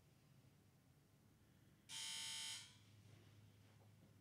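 A single electronic buzzer tone, bright and rich in overtones, starting suddenly about two seconds in and cutting off abruptly after under a second, in an otherwise near-silent room.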